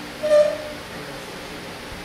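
A pause in a man's speech: one short voiced sound, like a brief hesitation syllable, about half a second in, then steady room noise.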